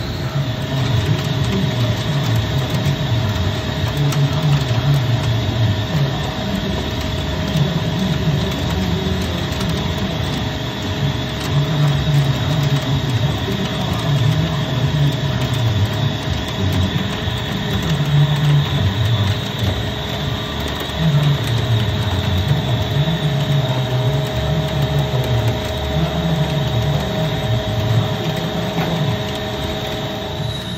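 Okuma multitasking CNC lathe turning a large martensitic stainless steel shaft under flood coolant: steady machining and spindle noise with a thin steady whine, coolant spray hissing and an uneven low rumble from the cut.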